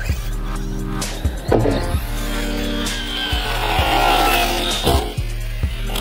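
Background music with a steady beat. Over it, from about a second and a half in until near the end, an RC monster truck's electric motor whines up and down in pitch and its tyres scrabble as it is driven hard.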